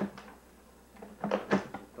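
Sharp clicks and knocks of a tape recorder being handled while the tape is changed: one at the start, then two more close together a little past the middle, with a few quiet words.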